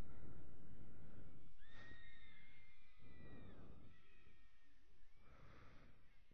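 Low rumbling outdoor noise on the microphone that slowly fades, in light rain. About two seconds in a faint, high-pitched call carries from the field and is held for about two seconds, with a shorter one just after.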